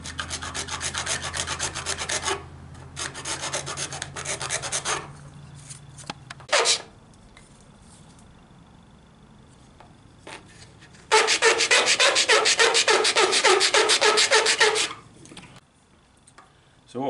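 Hand file rasping at the corners of a cut-out in a plastic panel in quick back-and-forth strokes: two short runs at the start, then a louder, longer run in the last third.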